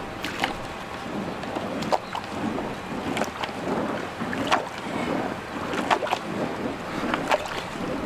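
Bamboo pole plunged repeatedly into a flooded drain, the standing water sloshing and splashing with each stroke in a quick, even rhythm, with sharp splashes or knocks now and then. The strokes are working loose a blockage in the drain.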